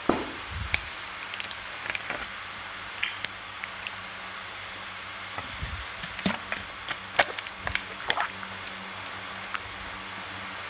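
Handling noise close to the microphone: irregular clicks, taps and knocks with cloth rustling, more of them in the second half, over a faint steady hum.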